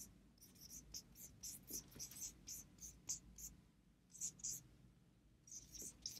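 Marker pen squeaking faintly on a whiteboard in short, irregular strokes as letters are written by hand.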